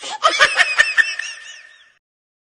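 High-pitched laughter: a quick run of laugh bursts that fades out just before the end.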